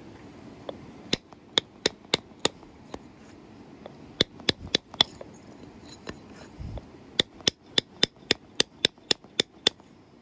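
Sharp clicking taps of knapping on the edge of a large flint biface during edge finishing, in three runs of quick strikes. The last run is about ten taps at some four a second.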